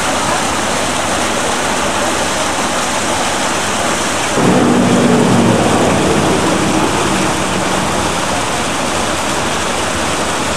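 Water pouring over rocks in a small waterfall, a loud steady rush that starts suddenly and grows louder and deeper for a second or two about four and a half seconds in.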